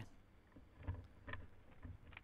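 A few faint, scattered computer mouse clicks over a low steady hum.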